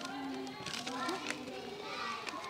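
Several young children talking at once, indistinct chatter with no single clear voice.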